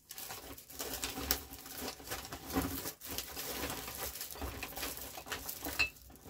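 Rummaging and rustling with irregular crinkles and small knocks, as bottles are handled and pulled out of a bag.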